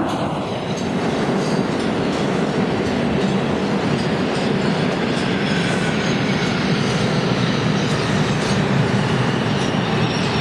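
New York City subway train running along an underground station platform, wheels clattering steadily over the rail joints. A faint whine falls in pitch over the second half.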